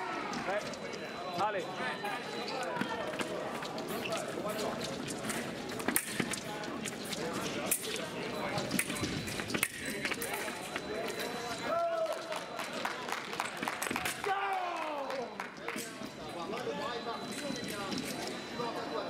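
Busy fencing-hall ambience: many voices talking at once in the background, with scattered sharp taps and clicks from the men's foil bout's footwork and blades on the piste.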